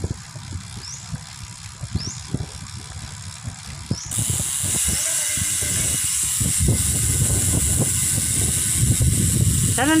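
Bicycle riding on a paved road: low tyre and road rumble with light knocks, and wind rushing over the microphone that grows louder about four seconds in. A few faint short high chirps sound in the first few seconds.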